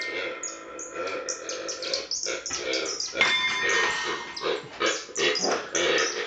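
Free-improvised experimental music: a French horn and electronics making short, irregular, yelping and barking-like bursts rather than sustained notes.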